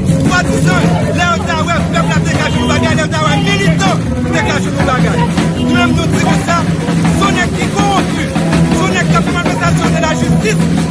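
A man speaking continuously in Haitian Creole into a microphone, with crowd chatter and a steady background music track beneath.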